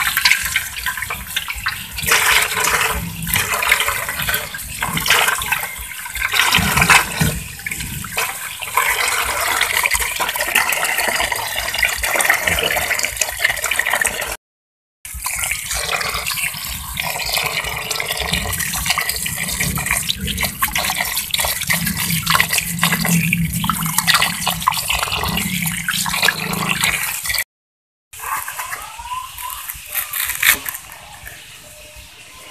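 Tap water pouring into a metal bowl and splashing as a bunch of green onions is rinsed under the stream, with uneven splashes from the handling. The sound breaks off twice briefly.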